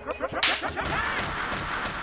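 Build-up section of a UK bassline / 4x4 dance mix with no kick or bass. A whip-like noise hit about half a second in swells into a long noise sweep with stuttering, rising synth effects.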